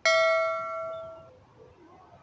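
A single bright bell chime, struck once and ringing out as it fades over about a second: the notification-bell sound effect of a YouTube subscribe-button animation.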